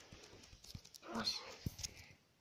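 A short, high vocal sound about a second in, amid several sharp knocks from a phone being handled and its microphone being covered.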